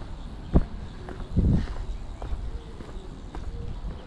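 Footsteps on stone paving, faint regular steps about two a second, over a steady low outdoor rumble, with a sharp knock about half a second in and a louder dull thump about a second and a half in.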